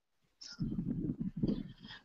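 A student's voice coming through the video call, quieter than the teacher's, repeating the sentence "But that was perfect" as pronunciation practice, starting about half a second in.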